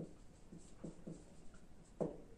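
Faint writing strokes, a handful of short scratches of a pen or marker on a writing surface, in a small room.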